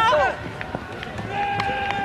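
A person's long, drawn-out shout: it begins about a second in and holds one sustained call whose pitch slowly falls. Just before it, a shorter shout breaks off right at the start.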